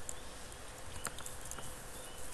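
Quiet room background with a faint steady hum and a single faint click about a second in.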